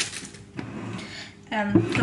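Light kitchen handling: a brief knock at the start, then faint, irregular rustling and clatter over a mixing bowl.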